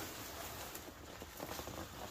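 Faint rustling and light knocks of a cardboard toy box with a plastic window being handled, over low background noise.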